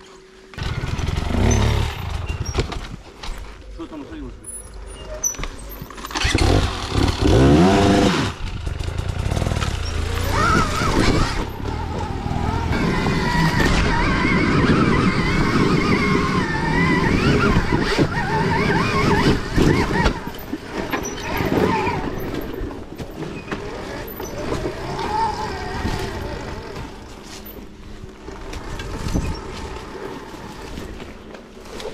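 Dirt bikes riding a forest trail. The Stark Varg electric motocross bike's motor whines up and down with the throttle, and a motorcycle revs loudly with a climbing pitch about seven seconds in.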